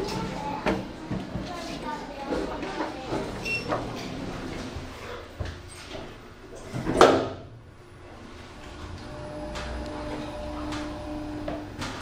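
Otis Gen2 lift in use: light clicks and knocks, a loud thump about seven seconds in as the doors shut, then the lift's steady low hum with a faint level tone as the car travels down.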